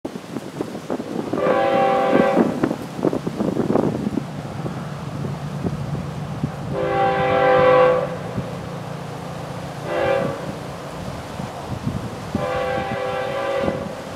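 Freight locomotive air horn sounding the grade-crossing signal, long, long, short, long, each blast a chord of several notes, as the train approaches a crossing. A steady low rumble from the approaching train runs beneath.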